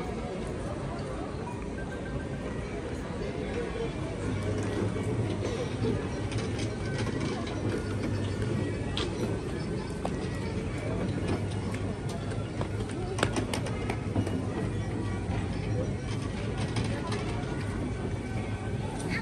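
Small children's carousel running, a steady low motor hum setting in about four seconds in, with music and voices in the background.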